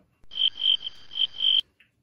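Cricket-chirping sound effect: four high chirps in about a second and a half over a faint hiss, starting and cutting off abruptly, the stock 'crickets' for an awkward silence.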